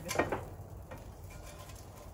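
A few light clicks and knocks of serving spoons against the grill and turkey as a whole smoked turkey is lifted off the grill grate, near the start, followed by a low steady background.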